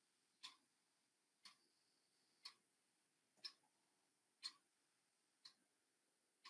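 Faint, steady ticking of a clock, one tick a second, over near silence.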